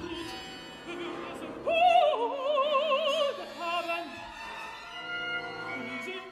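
Mezzo-soprano singing an operatic aria with orchestra. Her voice comes in loud just under two seconds in and holds a note with a wide vibrato, dipping slightly in pitch. Then the orchestra carries on more quietly with sustained string tones.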